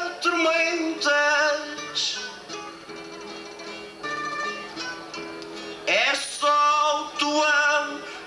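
A male singer sings a Portuguese folk song over plucked guitar accompaniment. The voice drops out for a short quieter guitar passage in the middle and comes back in with an upward slide about six seconds in.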